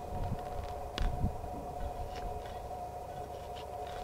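A homemade welded metal prickle-lifter is levered into lawn turf and soil. It makes faint scraping and crunching, with a couple of soft knocks about a second in, over a steady low rumble and hum.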